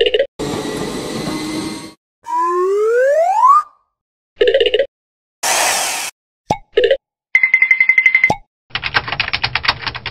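A run of cartoon-style sound effects: a motor-like whir, then a rising whistle glide, short blips, a brief burst of hiss, a steady pulsing beep, and rapid clicking near the end.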